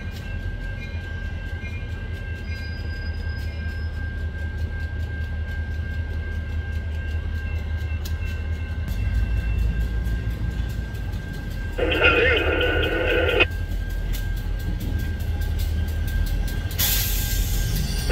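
Diesel locomotives led by a CSX GP38-3 rolling slowly past at close range, their engines giving a steady low rumble that grows louder about halfway through as the units come alongside. A short louder pitched sound comes near the middle and a loud hiss near the end.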